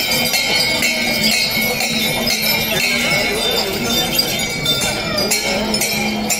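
Continuous high, dense metallic ringing and jingling, like many small bells or hand cymbals sounding together, over a murmur of crowd voices and a low steady hum.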